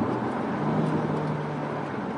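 Peugeot 3008 with 1.6-litre turbo engine and six-speed automatic, heard from inside the cabin while driving: a steady engine hum over road noise, holding one low pitch from about half a second in.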